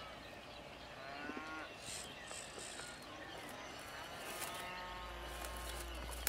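Cattle mooing faintly, several separate calls in a row.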